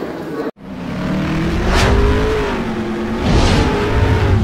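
Produced outro sound effect starting after a split-second gap: a low rumble and a droning, engine-like tone that slowly rises and then falls, with two sweeping whooshes, one near the middle and one near the end.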